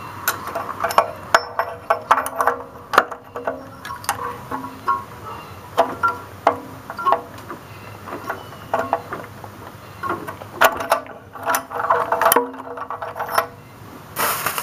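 Hand tool and oxygen-sensor socket working the upstream oxygen sensor out of the exhaust manifold. It gives an irregular run of sharp metallic clicks and clinks, thickest near the end. The sensor is breaking loose easily rather than seized with rust.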